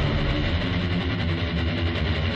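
Background score music with guitar.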